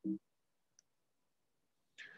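Near silence in a pause of speech over a video call, with a short low voiced sound at the very start and a sharp faint click near the end.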